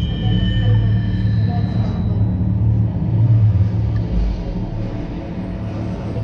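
Soundtrack of a projected film played over room speakers: ominous music, a deep steady rumble under long held high tones that fade out after about two seconds.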